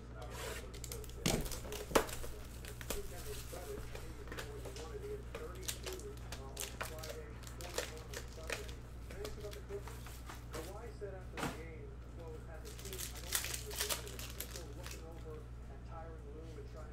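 Plastic shrink wrap being slit with a utility knife and pulled off a card hobby box, then foil card packs being handled: crinkling with many sharp clicks and crackles, the loudest about two seconds in and again near the middle.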